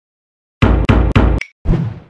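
Short musical logo sting: three loud, sharp hits about a quarter second apart, then a fourth hit that fades out.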